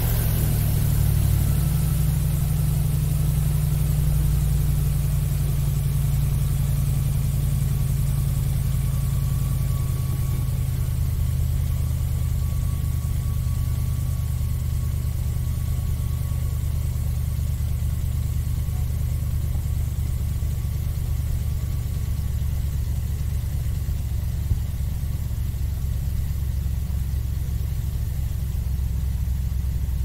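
Airboat engine and caged propeller running steadily as the boat travels across open water: a loud, even, deep hum that hardly changes.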